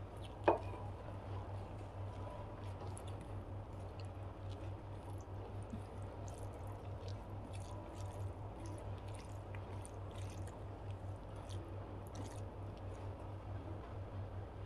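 Fingers kneading cooked rice with dal curry on a plate: a soft, wet squishing with many small crackles. About half a second in, a single sharp metallic clink rings briefly. A steady low hum runs underneath.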